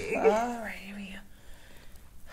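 A woman's wordless vocal sound lasting about a second, its pitch rising and falling, then quiet.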